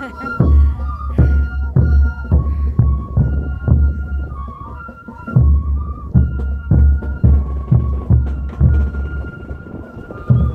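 Andean festival music: a high flute melody of held notes over steady, heavy drum beats.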